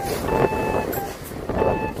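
Strong wind buffeting the microphone over small waves washing onto a sandy beach, with two short steady beeps about a second apart over it.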